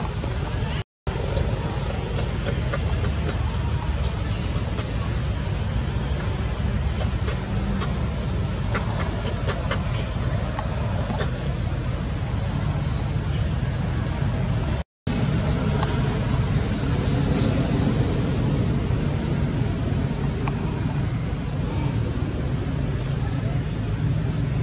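Steady outdoor background noise with a strong low rumble and a few faint ticks, cut to silence for a split second twice, about a second in and again about fifteen seconds in.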